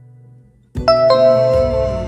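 A quiz's answer-reveal chime: two falling notes starting suddenly about three-quarters of a second in, over background music, after a faint fading tone.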